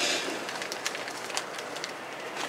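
Paper banknotes rustling and crackling as a fanned wad of bills is handled close to the microphone, with scattered small ticks.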